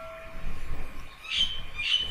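The fading ring of an electronic notification-bell chime, dying out about half a second in, followed by a few faint, short, high chirpy sounds.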